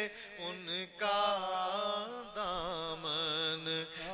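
A man sings an Urdu naat in long, wavering melismatic notes over a steady low drone, with brief pauses about a second in and again just past two seconds.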